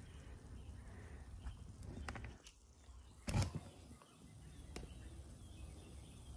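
Quiet background with a few light clicks and one short knock about three seconds in, the noise of a phone being handled and moved closer.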